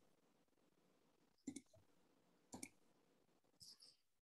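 Faint clicks of a computer mouse, in three short groups of two or three clicks about a second apart, over near silence.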